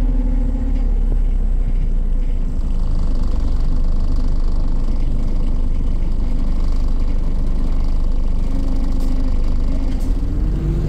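Steady engine and road rumble inside a moving Volvo B5LH hybrid double-decker bus whose turbo has a leak. A droning tone near the start falls slightly in pitch, and a tone comes back near the end.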